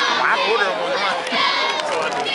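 A youth cheer squad of young girls shouting a cheer together, many high voices at once, over crowd noise.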